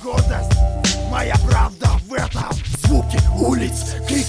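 Hip-hop beat with a heavy kick drum and a voice rapping over it. The low bass drops out for about a second in the middle.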